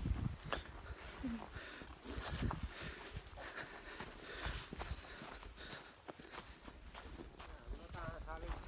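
Footsteps on a snow-covered trail, a string of irregular soft scuffs close to the microphone, with a faint voice now and then.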